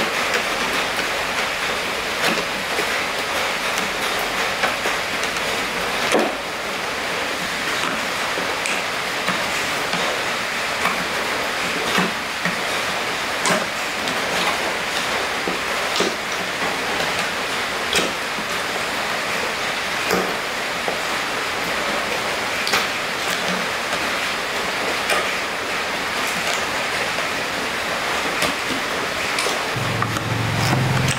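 Sharp clicks of a screwdriver prying metal staples out of a plastic scooter seat base, roughly one every two seconds, over a steady hiss.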